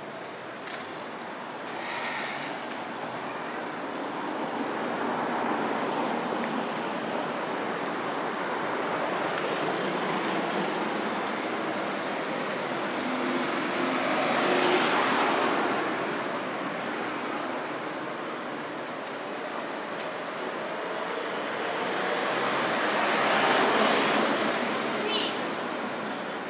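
Cars driving past on a village street over a steady hum of traffic, the loudest pass-by about halfway through and another swelling up near the end.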